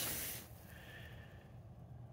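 A man's short, airy breath out, fading within the first half second, followed by faint steady room hiss.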